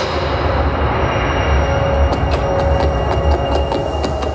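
Soundtrack of a castle projection show through outdoor speakers: a low, steady rumble with faint sustained tones held over it, a transitional passage between music segments. A scatter of light clicks comes in about halfway through.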